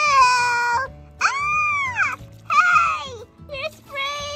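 High-pitched squeals from a woman's voice pitched as little dolls. About four cries, each rising and then falling, with short gaps between them, over background music.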